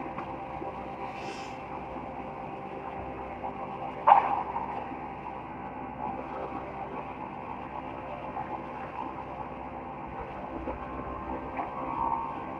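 Woodworking machine (planer) running steadily with a hum of several steady tones, and one loud, sharp sound about four seconds in.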